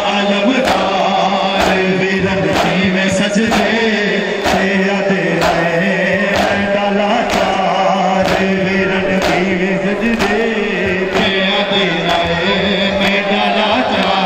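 Men's voices chanting a Muharram noha in unison, long held notes, over the sharp, evenly timed slaps of matam: open hands striking bare chests together, about twice a second.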